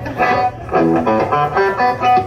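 Electric guitar through an amplifier picking a short run of single notes, each ringing about a quarter second, over a steady low tone.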